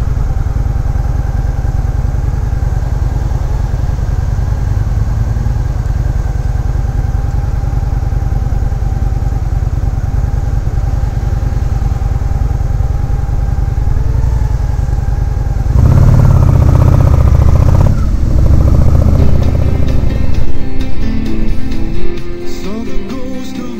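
Motorcycle engine idling steadily, then about 16 seconds in revving up as the bike pulls away, with a change in the engine note about two seconds later.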